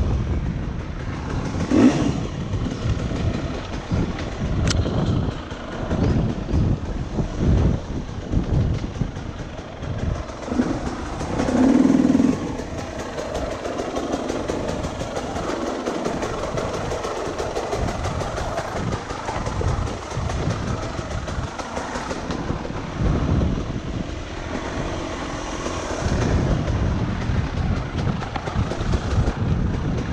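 Enduro dirt bike engine revving unevenly, rising and falling as the rider works it over rough, rutted forest trail, with knocks and rattles from the bike over the bumps. A louder surge of revs comes about twelve seconds in.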